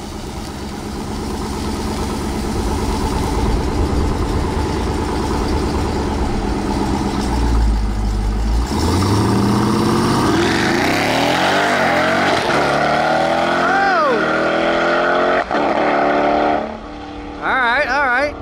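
Supercharged 6.2-litre Hemi V8 of a modified Jeep Grand Cherokee Trackhawk rumbling at the start line, then launching about halfway in and revving up hard through the gears, its pitch dropping at an upshift. Near the end the revs fall away as the throttle is lifted after a shift that felt wrong, a missed shift caused by the missing transmission tune.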